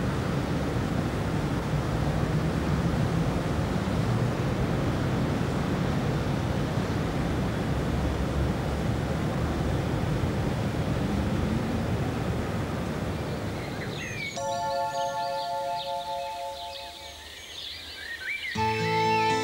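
Steady rushing ambient noise, heaviest in the low end. About 14 seconds in it fades and music comes in with several held notes and high twittering sounds.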